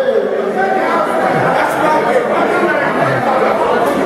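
Crowd chatter: many people talking over one another at once, with no single voice standing out.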